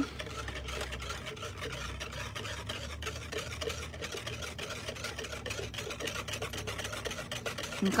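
Metal wire whisk beating a soapy bubble solution in a plastic tub: a rapid, steady run of small scraping clicks as the wires stir the frothy liquid and knock against the tub.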